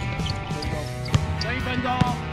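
A basketball bouncing on an outdoor hard court, one sharp bounce standing out about a second in, over steady background music.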